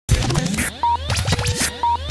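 Short electronic intro jingle for a TV segment, made of many rising and falling sweeps and two short beeps over a steady low bass tone.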